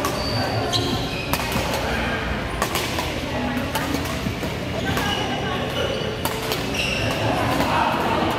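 Badminton play in an indoor court: sharp racket-on-shuttlecock hits roughly every second, short high squeaks of shoes on the court floor, and voices in the hall.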